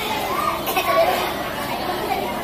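Background chatter of several voices, a child's voice among them, loudest about a second in.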